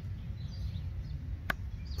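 A small fixed-blade knife (Cold Steel Pendleton Mini Hunter, 3-inch CPM 3V blade) dropped point-first onto a wooden stump. It strikes once, sharply, about one and a half seconds in, and sticks in the wood.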